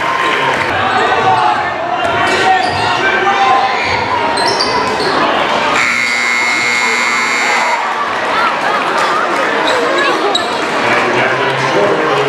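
Crowd noise in a gymnasium, with chatter and shouts throughout. About six seconds in, the scoreboard's end-of-half buzzer sounds one flat, steady tone for about two seconds.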